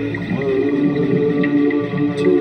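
Ambient music of sustained, droning tones, with one note that slides in pitch about half a second in.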